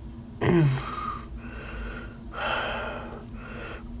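A man breathing heavily right at the microphone: three loud breaths, the first opening with a short voiced sound that falls in pitch.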